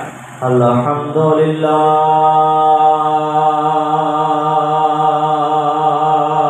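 A man's voice chanting through a microphone: a few short notes in the first second and a half, then one long, steady note.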